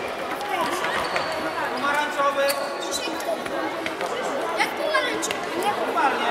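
Voices shouting and chattering during a youth futsal match, with a few sharp knocks of the ball being kicked on the wooden floor.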